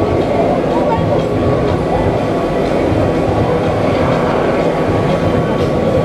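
Polyp fairground ride running at speed: a steady, loud rumble from the rotating arms and swinging gondolas, with voices mixed in.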